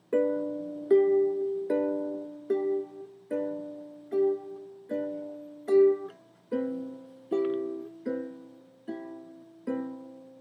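Ukulele strummed in a steady rhythm, about one chord every 0.8 seconds, each ringing and fading before the next, with a chord change a little past halfway: the instrumental intro of a song before the singing starts.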